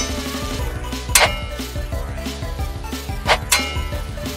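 Three sharp clashing hits with a short metallic ring, like swords striking, about a second in and twice in quick succession past three seconds, over steady background music.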